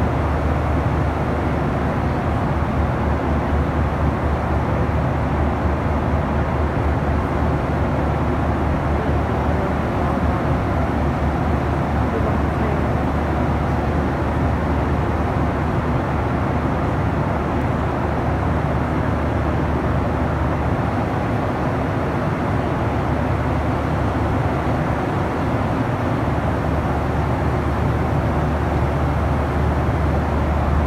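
Airliner cabin noise: the steady low drone of the jet engines and airflow heard from inside the passenger cabin, unchanging throughout.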